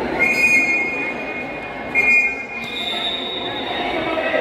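Referee's whistle blown twice: two short, shrill, steady blasts about two seconds apart, over the noise of an indoor futsal court.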